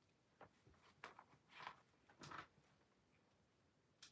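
Near silence broken by a few faint rustles and handling noises, about half a second, one second and two seconds in.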